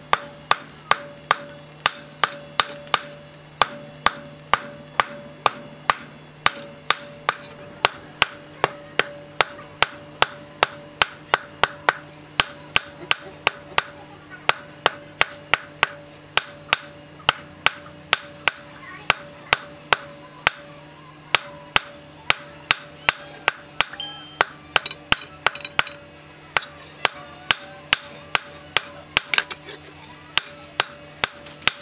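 Hand hammer forging a red-hot piece of broken brake disc rotor on a steel post anvil: a steady run of sharp blows, about two a second, with a steady ringing tone beneath them.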